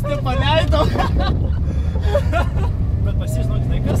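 Car engine and road noise heard inside the cabin during a slalom run, a steady low drone, with people talking briefly over it.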